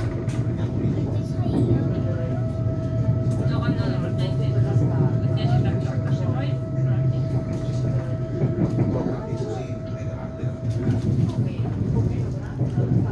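Running noise heard from inside the passenger car of an ETR 700 Frecciarossa electric train moving at speed: a steady low rumble with scattered light clicks from the wheels on the track. A thin steady whine runs along with it and stops near the end.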